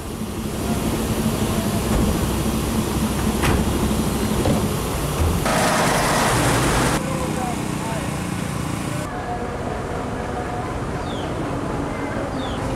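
Heavy trucks' diesel engines running in floodwater, a steady low hum, with a loud hiss lasting over a second about halfway through. Then quieter outdoor ambience with background voices.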